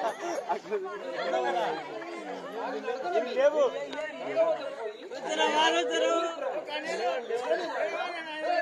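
Several voices talking over one another.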